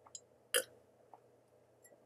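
A person drinking water from a glass: one short, loud gulp about half a second in, with a couple of faint mouth clicks around it.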